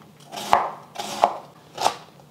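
Chef's knife shredding green cabbage on a wooden cutting board: three slicing strokes, roughly one every two-thirds of a second, each a short crunch through the leaves ending in a knock of the blade on the board.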